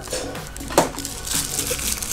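Rustling and crinkling of a thin white wrapper as a shaving brush is slid from its box and unwrapped, over quiet background music.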